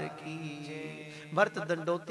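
The tail of a devotional chant: a steady held musical note lingers, with a man's voice resuming about one and a half seconds in.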